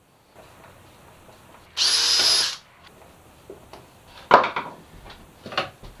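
Cordless drill-driver running in one short burst with a steady high whine, driving a small number four screw through a brass-plated hinge into wood. A sharp knock comes a little after four seconds in, then a few light clicks.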